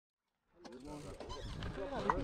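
Silence for about half a second, then faint voices of people talking fade in.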